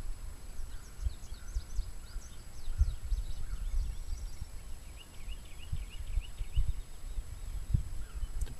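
Outdoor ambience: faint bird chirps, a few quick ones in the first seconds and a short trill past the middle, over an uneven low rumble with a few soft low thuds.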